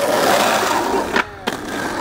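Skateboard wheels rolling on a hard surface, with two sharp clacks of the board a little past a second in, then rolling again.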